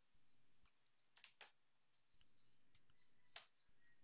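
Faint computer mouse and keyboard clicks over near silence: a single click, then a short cluster about a second in, and one sharper click near the end, as text is copied and pasted.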